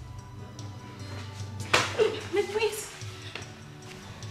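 Background film music runs throughout. About two seconds in it is broken by a sudden loud sound and a woman's short, wavering, wordless cry.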